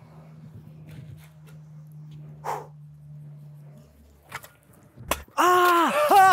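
A man's loud, drawn-out 'ohh!' yell near the end, after a sharp knock just before it. The first five seconds are quiet, with only a faint low hum and a few faint clicks.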